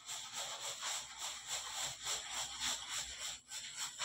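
Hands rolling and stretching a rope of bread dough on a floured steel table: a run of soft rubbing and scraping strokes, a few a second.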